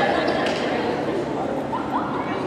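Indistinct, echoing chatter and calls of players in a gymnasium, with a short rising squeak near the end.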